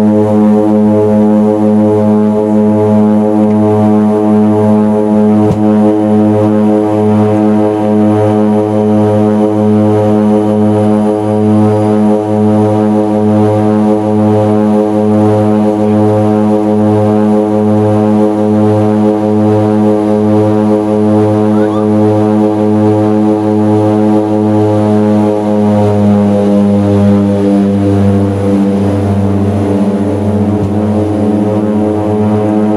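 Turboprop engines and propellers of a small twin-engine plane running at high power: a loud, steady drone of several pitched tones. Near the end the tones shift in pitch.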